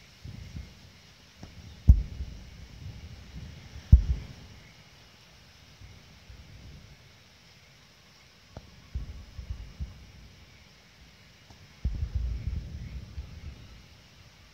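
Low rumbling and thumps of handling noise on a handheld camera's microphone, with two sharp knocks about two and four seconds in and further bursts of rumbling about nine and twelve seconds in.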